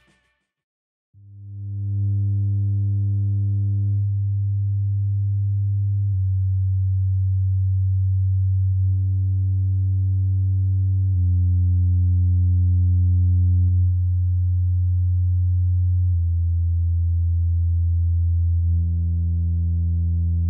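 Bass test sine tones played through a pair of M-Audio AV32 desktop studio monitors with 3-inch woofers: a loud, steady low hum that starts about a second in and steps down in pitch every two to three seconds, passing about 95 Hz and then 85 Hz.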